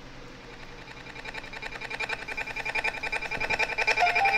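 Music: a held chord that pulses rapidly several times a second and swells steadily louder, leading into a spoken-word track.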